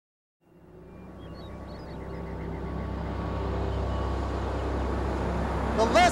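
Car engine running steadily, fading in after a moment of silence and growing louder as the car approaches.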